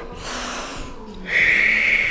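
A woman breathing deeply in a slow breathing exercise: a softer breath drawn in, then about a second in a loud, steady hiss of air blown out slowly through the mouth.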